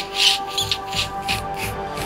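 A man's breathy, near-silent laughter: short hissing breaths, about four a second, that die away near the end, over background music with sustained tones.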